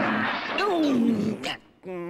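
A rough, roaring vocal cry that falls in pitch and lasts about a second and a half.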